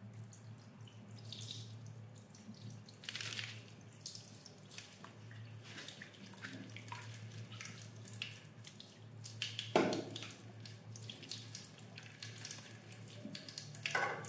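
Tap water running and splashing in a bathroom sink as a kitten is rinsed by hand, with scattered drips and splashes and a louder burst of splashing about ten seconds in. A low steady hum runs underneath.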